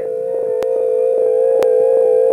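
A steady electronic drone held on one pitch in the film's music score, with two faint clicks about a second apart.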